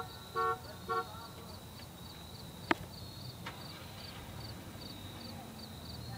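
Car horn sounding in short toots, three in the first second, followed by a single sharp click nearly three seconds in. A faint low engine hum rises near the end.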